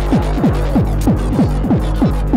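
Hardtek track playing from a 12-inch vinyl record: a fast driving beat of deep bass hits, each falling in pitch, over a steady low drone.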